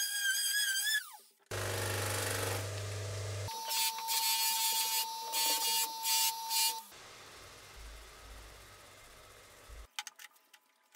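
A string of short power-tool sounds. A small motor whines and winds down about a second in, then a low motor hum follows. Next a spinning wheel on a motor shaft whines steadily, with several bursts of grinding hiss as metal is pressed to it, and a quieter rumble follows near the end.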